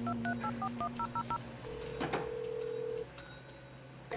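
Touch-tone telephone being dialed: a quick run of about eight short key tones, then a steady ringing tone on the line for about a second and a half, over a faint low music bed.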